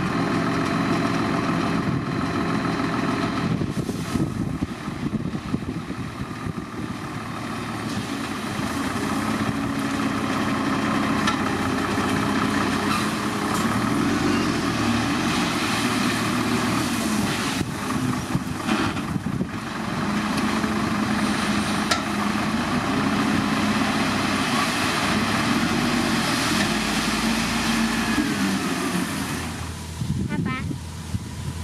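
Scania 124C 420 dump truck's diesel engine running steadily while its tipper body is hydraulically raised to unload gravel, with a few short knocks about two-thirds of the way through.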